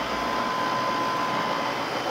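Steady machine noise: a constant whirring hiss with a faint, steady high whine running under it.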